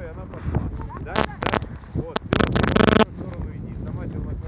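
A person's voice calling out a few times, short calls about a second in and a louder, longer one just past two seconds, over wind rumbling on the microphone.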